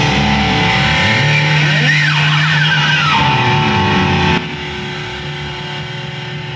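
A garage rock band playing live, electric guitars holding sustained notes; one note slides up and back down about two seconds in. A little after four seconds the loud playing stops abruptly and a quieter guitar sound rings on.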